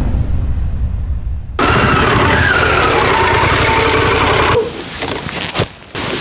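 Channel logo intro sound effect: a low rumble fades out, then a loud rushing burst with a wavering whine cuts in about one and a half seconds in and stops abruptly about three seconds later.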